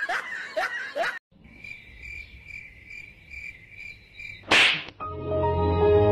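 Smacks of a floppy powder-covered object against a man's face amid laughter, cut off after about a second. Then a thin chirp repeating about twice a second, a short loud burst of noise, and music starting near the end.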